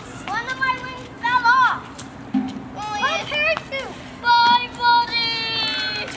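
Children's high-pitched voices shouting and calling out, with a long drawn-out cry near the end.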